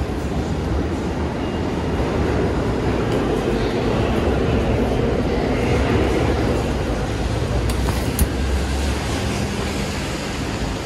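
Heavy rain pouring down over city street traffic: a steady, loud wash of noise with a low rumble underneath. A single short sharp click a little after eight seconds in.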